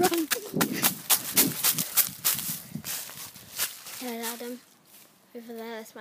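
Quick running footsteps crunching through dry leaf litter, about three strides a second, for the first three and a half seconds. After that a voice calls out in several short held tones.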